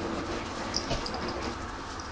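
A kitten giving a few short mews against steady background noise.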